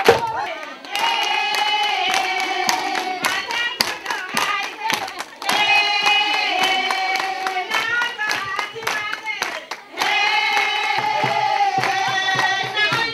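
A woman singing in long held phrases, with short breaks between them, over steady rhythmic hand clapping from a crowd of women.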